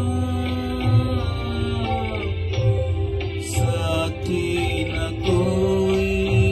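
A man singing a slow, sad Hindi film song into a microphone over a karaoke backing track, with long held notes that glide between pitches above a soft low beat.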